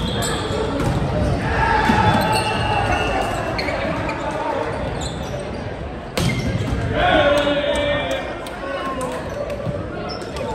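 Indoor volleyball rally in a gym hall: sharp smacks of hands on the ball, the loudest about six seconds in as a player spikes it at the net, with players shouting and the sounds echoing in the hall.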